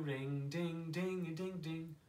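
A man singing unaccompanied, a quick run of short repeated 'ding, ding, ding' syllables on a fairly level pitch, from the closing line of a children's telephone song.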